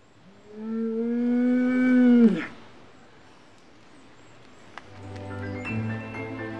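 Heck cattle mooing: one long, loud moo of about two seconds that drops in pitch as it ends. Soft music sets in near the end.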